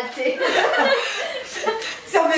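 Several women laughing together, with the laughter dying down toward the end.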